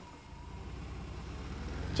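Car engine running, a low rumble that grows steadily louder.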